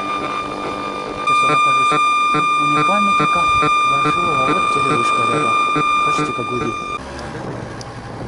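Electromagnetic radiation detector's speaker turning radio signals in the street into a steady high buzz with a regular ticking about three times a second. The buzz starts abruptly about a second in and cuts off suddenly about a second before the end.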